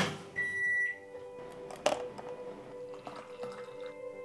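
A kitchen appliance's electronic beep: one high, steady tone lasting about half a second, just after the start. A sharp knock follows about two seconds in.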